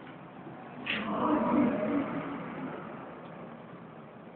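A motor vehicle passing by, swelling about a second in and fading away over the next two seconds, over steady outdoor background noise.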